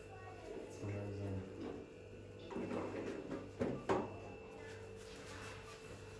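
Clatter and two sharp knocks from the metal lid of an electric injera griddle (mitad) being handled, over a faint steady hum, with low voices early on.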